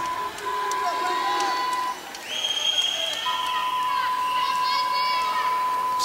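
A referee's whistle gives one steady blast of about a second, about two seconds in: the signal for the server to serve. Crowd chatter echoes in the gym around it, with a thin steady high tone underneath.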